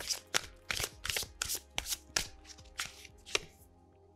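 A deck of tarot cards being shuffled by hand: quick, crisp card strokes about three a second, thinning out near the end.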